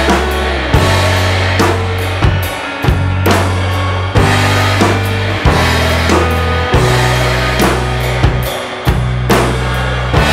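SJC Custom Drums kit played over the recorded song, with hard bass drum and snare hits about once a second over the track's held low notes, which change every second or two.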